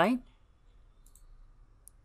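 A few faint computer mouse clicks, short sharp ticks, the clearest one near the end, as points are placed for a new line.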